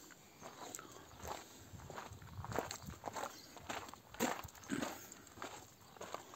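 Footsteps on gravel, about two steps a second.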